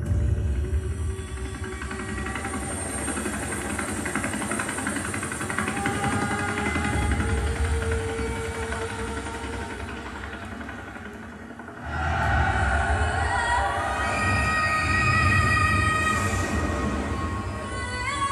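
Tense movie-trailer soundtrack: dark music over a deep, steady rumble with long held tones. It starts suddenly, thins out about ten seconds in, and comes back louder about twelve seconds in with sustained notes.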